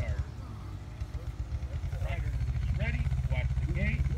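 Wind buffeting the phone's microphone, an uneven low rumble throughout, with voices speaking a few words in the second half.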